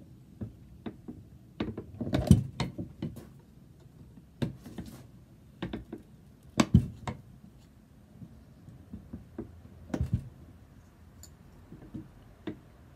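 Hand-lever bench shear cutting sheet copper: irregular clusters of sharp metallic clacks and knocks as the blade bites and the lever moves. The loudest clusters come about two seconds in and just before seven seconds, with another near ten seconds.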